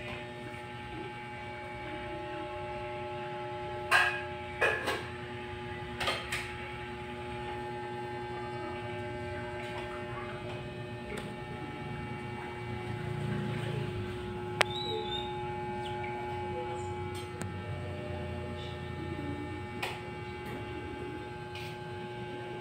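A steady hum of several held tones, with a few sharp knocks or clicks about four to six seconds in and one more sharp click in the middle.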